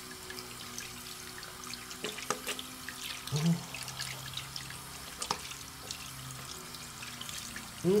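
Bathroom faucet running in a steady stream while soapy hands are rubbed together under it, with small splashes and wet ticks. A low steady hum runs underneath.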